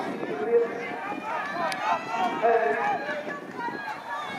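Voices of several people talking and calling over one another. There is a single short click partway through.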